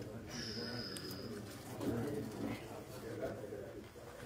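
Muffled background chatter of people talking, heard through clothing pressed over the microphone, with a faint steady high tone for about a second near the start.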